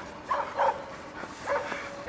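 Husky-type sled dogs yipping and whining in several short high cries.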